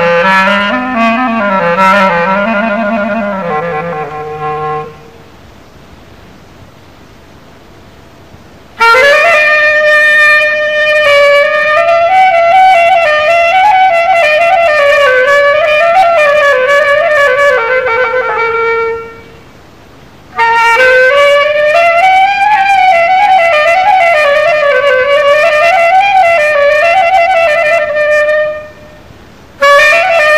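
Solo instrumental taqsim: one melodic instrument improvising slow, ornamented phrases without accompaniment. A low phrase sinks and stops about five seconds in; after a pause a higher phrase begins about nine seconds in, with short breaths near twenty seconds and just before the end.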